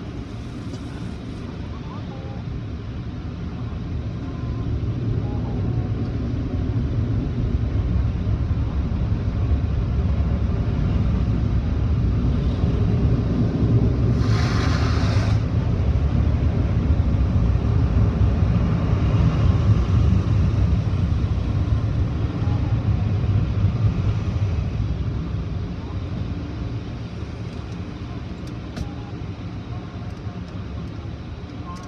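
Automatic tunnel car wash heard from inside the car: water spray and cloth brushes working over the body give a low rumble that builds over the first few seconds, holds loud through the middle and eases near the end. A short, sharp hiss of spray comes about halfway through.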